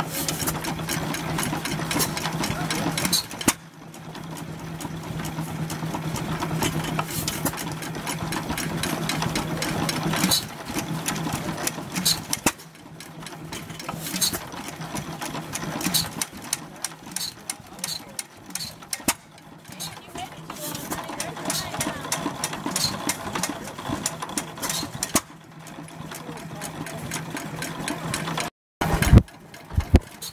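Economy 4 HP hit-and-miss gas engine running, its valve gear and ignitor clattering in a fast, even rhythm, with a louder bang now and then.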